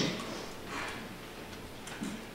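A few soft, scattered clicks and light knocks over quiet room noise, the sharpest one near the end.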